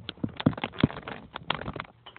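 Handling noise from a tablet being picked up and moved: its leather protective cover rubs and knocks against the microphone in a run of irregular clicks and thumps, loudest in the first second.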